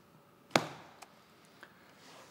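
A small notebook is closed and laid down on a wooden tea table: one sharp knock about half a second in, followed by two faint ticks.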